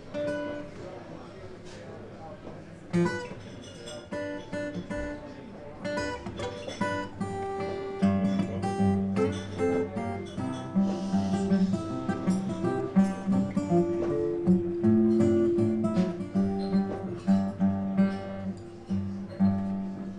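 Acoustic guitars being tuned up: single plucked notes and short chords tried one after another, growing fuller and more continuous from about eight seconds in, before the song begins.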